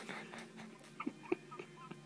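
A person's faint, short vocal sounds: a few brief squeaky noises between about one and one and a half seconds in.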